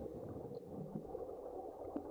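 Muffled underwater gurgling and low rumble from a scuba diver's regulator exhaust bubbles, heard from under water.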